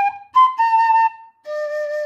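Wooden fife playing four separate notes, G, B, A, then a low D held for about a second: the closing phrase of the tune, played slowly as a fingering demonstration.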